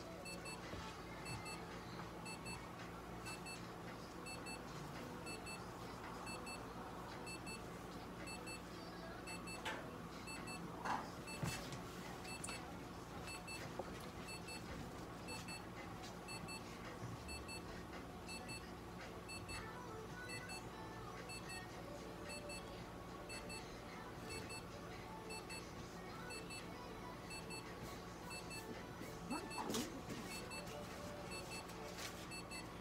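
Faint electronic double beeps repeating about once a second over a steady low hum, with a couple of light knocks about ten seconds in.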